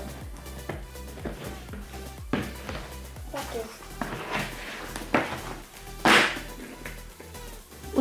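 Knocks, scrapes and rustles of a large plastic toy surprise egg being handled and pried apart at its seam, with one louder burst about six seconds in, over background music with a steady beat.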